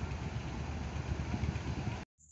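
Ocean surf breaking on a beach with wind on the microphone: a steady rushing noise over a heavy, fluttering low rumble.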